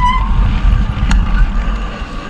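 Wind rumble on the microphone and tyre noise of a bicycle rolling along a dirt road, easing off toward the end as the bike slows. A brief high brake squeal at the very start and a single sharp tick about a second in.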